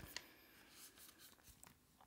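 Near silence: room tone with a few faint, scattered clicks and rustles.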